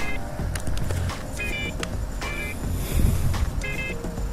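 Steady low background rumble, like distant traffic, with short high-pitched chirping tones recurring about once a second.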